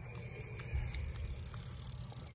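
BMX bike rolling on concrete close by, with a low rumble from the tyres and a few light clicks and rattles from the bike, swelling a little louder about a second in as it passes.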